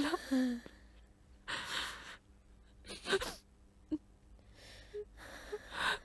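A woman crying: a handful of short, ragged sobbing breaths and gasps, separated by quiet pauses.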